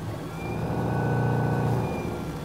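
A 4 kW Torqeedo electric motor in a yacht's rudder shaft humming as it drives the propeller, swelling louder over the first second and easing back near the end as the throttle lever is moved.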